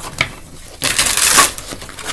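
Tarot cards being shuffled by hand: a small click, then a rapid half-second burst of card flicks about a second in.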